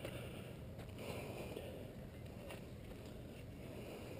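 Faint low rumble of outdoor background noise, with a few soft taps.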